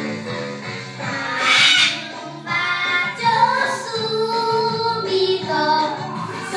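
Young children singing a children's song into karaoke microphones over a recorded backing track, loudest briefly about a second and a half in.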